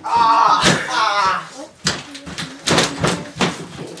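Several thuds of bodies and feet hitting the floor of a homemade wrestling ring as two wrestlers grapple, with shouting voices over the first second or so.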